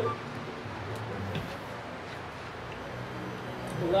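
Room tone: a low, steady hum with a few faint clicks.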